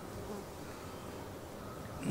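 A faint, steady buzz under quiet background noise.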